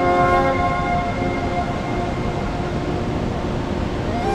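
Background music of sustained, held chords over a steady hiss; the chord thins out in the middle and a new one begins at the very end.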